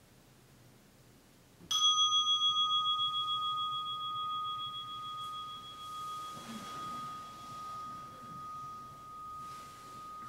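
A meditation bell struck once, about two seconds in, its clear tone ringing on and slowly fading with a steady wobble. It marks the end of a thirty-minute zazen sitting.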